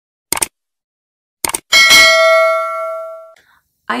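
Subscribe-and-bell animation sound effect: short mouse-like clicks, then a bright bell ding that rings out and fades over about a second and a half.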